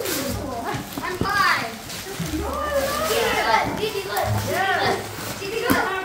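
Several people, children among them, chattering and calling out over one another, with voices rising high in pitch.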